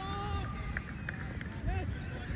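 Cricket players shouting on the field as a wicket falls: one long held call at the start and a second short call near the end.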